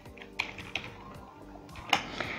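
Typing on a computer keyboard: a few separate keystrokes, the sharpest one near the end.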